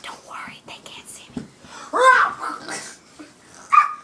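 Whispering voices, broken about two seconds in by a loud, high-pitched vocal cry that rises and falls in pitch, and by a shorter high cry near the end.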